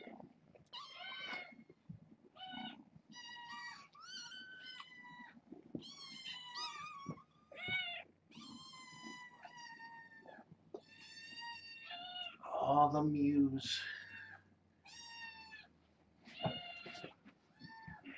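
Kittens meowing over and over, a run of short high-pitched calls that vary in pitch, one after another. A person's voice breaks in briefly about two-thirds of the way through.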